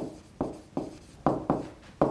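Stylus writing on a tablet surface: a sharp tap each time the pen lands for a new stroke, about five in two seconds, each fading quickly.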